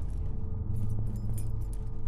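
Metallic jingling that comes in clusters roughly every second and a half with a person's steps climbing a carpeted staircase, over a low steady drone.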